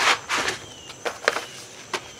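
Paper seed packets rustling and crinkling as they are handled and sorted through, in a few short, sharp bursts.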